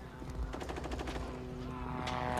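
Rapid machine-gun fire in the distance, a fast even run of shots, over a low steady drone.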